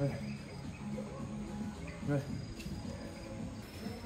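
Insects chirping steadily, with background music of held low tones underneath.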